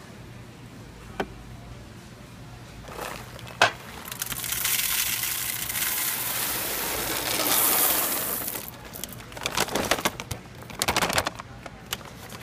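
Whole coffee beans poured from a paper bag into a coffee grinder's clear plastic hopper: a steady rattling rush of beans for about four seconds, followed by crinkling paper and a few scattered beans as the bag is shaken out. Two sharp clicks come before the pour.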